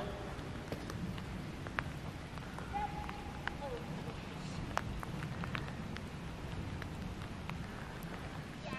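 Outdoor background of a steady low rumble with scattered light clicks, and a brief, faint distant voice about three seconds in.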